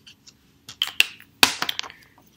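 A plastic felt-tip marker being capped and set down on a stone countertop: a handful of sharp clicks and knocks, the loudest about one and a half seconds in.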